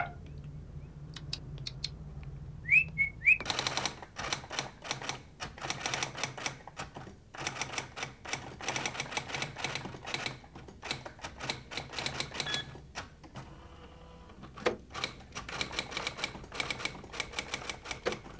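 Electric typewriter being typed on: quick, irregular keystrokes starting a few seconds in, with a short pause about two-thirds of the way through before typing resumes.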